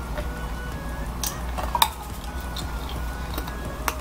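Ice clinking in a small plastic cup: a few light clicks, about a second in, near two seconds and just before the end, over a steady low room hum.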